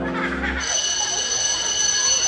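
School bell sound effect: a steady, high ringing tone that starts about half a second in as the background music's held chord cuts off. It signals that break time is over.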